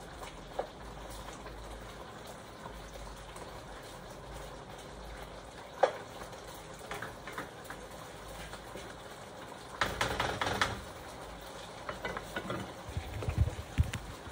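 Adobo frying in a non-stick frying pan as it is stirred with a spatula, with occasional clicks of the spatula on the pan. A quick run of louder clattering comes about ten seconds in, and a few knocks and bumps near the end.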